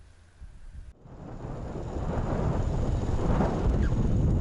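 Wind buffeting the microphone of a camera carried on a moving bicycle. After a cut about a second in it grows steadily louder as the rider gathers speed.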